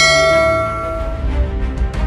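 A bright bell-like chime struck at the start, ringing out and fading away over about a second, over the channel's background theme music.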